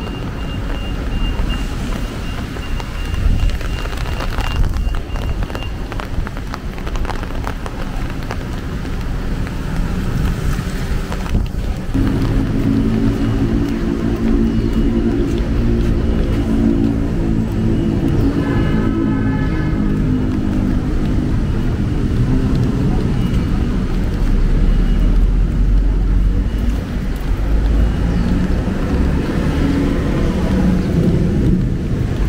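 City street traffic noise from passing and nearby cars on a wet road. A vehicle's reversing beeper sounds for the first few seconds. From about the middle a nearby engine hums steadily at a low pitch.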